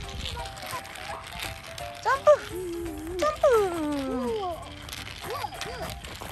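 Children's voices making swooping, sliding sounds that fall in pitch, loudest about halfway through, while the wheels of a small wooden toy car rattle as it is rolled along a concrete ledge.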